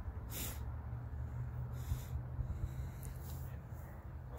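Steady low wind rumble on the microphone, with three short breathy hisses of a person breathing close to it.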